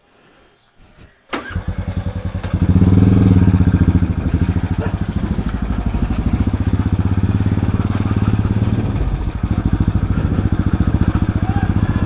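Royal Enfield single-cylinder motorcycle engine starting up about a second in, getting louder a second later as it pulls away, then running with an even, rapid pulse while the bike rides along. Heard from a phone mounted on the rider's helmet.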